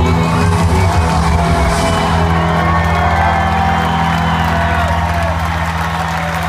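Live rock band in a stadium holding a long sustained chord at the close of a song, with the crowd whooping and cheering over it. Clapping starts to come in near the end.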